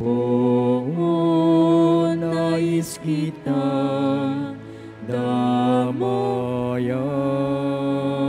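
Slow church hymn with long held sung notes over sustained accompaniment chords, the harmony shifting every second or two.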